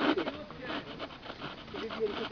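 Faint voices of people talking in the background, with irregular crunching steps on the trail as the group walks downhill in the dark.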